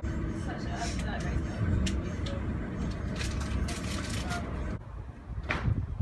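Steady low rumble and rattle of a moving passenger train heard from inside the carriage, with faint voices; it drops away suddenly near the end.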